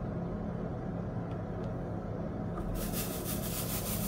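A steady low hum. About three seconds in, a dry, rattling rustle begins: resin diamond-painting drills shifting in a plastic drill tray as it is handled.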